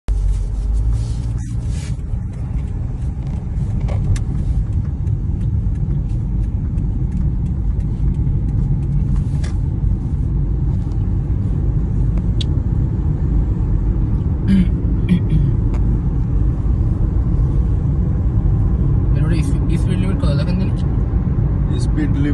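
Road and engine noise heard inside a moving car's cabin: a steady low rumble, with a few scattered clicks and knocks.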